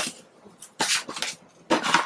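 Paper and cardboard being handled: three short rustling, scraping bursts as a printed manual and a cardboard box are moved about.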